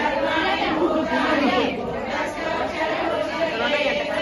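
Several women talking at once, an overlapping chatter of voices in a room.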